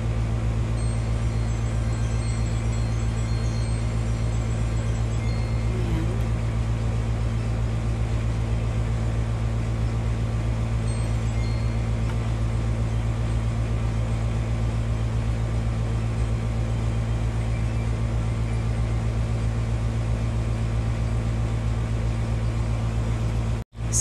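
Steady low hum with faint high ringing tones, unchanging throughout; it cuts out for an instant near the end.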